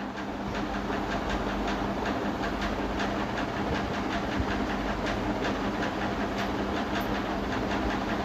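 Steady mechanical hum and hiss with a low steady tone, dotted with faint irregular ticks.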